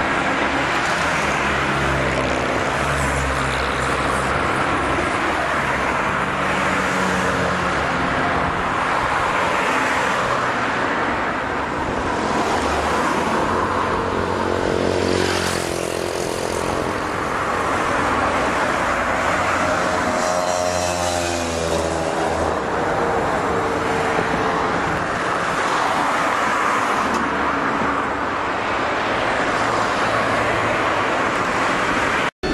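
Car engine and road noise heard from inside a moving car, steady throughout, with the engine note shifting as the car changes speed. A brief louder rush comes about halfway through, and the engine pitch bends up and down about two-thirds of the way in.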